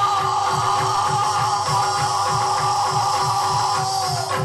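Yakshagana accompaniment music: one long held note rides over a steady drone, with drum strokes at about three a second underneath.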